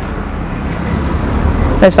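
Road traffic noise: a passing vehicle's low rumble that swells toward the end, with a man's voice starting near the end.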